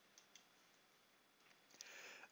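Faint computer mouse clicks, two in quick succession near the start, over near silence.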